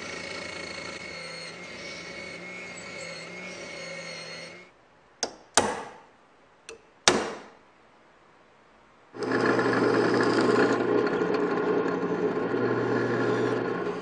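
Small wet wheel grinder running steadily with a steel knife blank held to its wheel, then cutting off. A few sharp clicks follow over near silence. Then a drill press motor starts and runs loudly and steadily.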